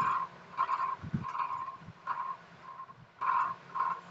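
An animal calling in the background: short calls repeated at one pitch, about two or three a second, unevenly spaced.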